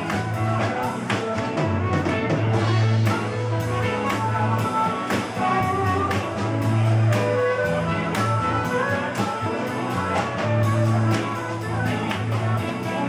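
Trumpet playing a melodic solo line over a live band, with a bass line and a steady beat underneath.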